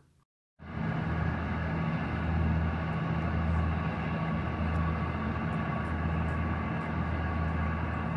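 Steady low engine rumble with a hum, under outdoor background noise. It starts after a moment of silence.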